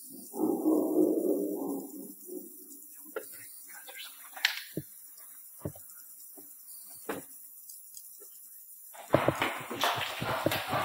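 A low, voice-like sound for about a second and a half, then a few scattered faint knocks and clicks, and loud scuffing and rustling near the end.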